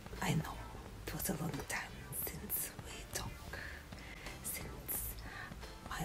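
A woman whispering softly, in short breathy phrases with sibilant hisses.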